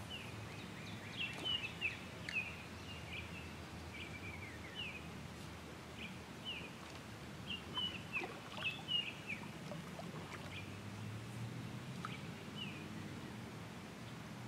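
Small birds chirping: short, quick high notes in clusters, busiest in the first few seconds and again around eight to nine seconds in, over a faint low background hum.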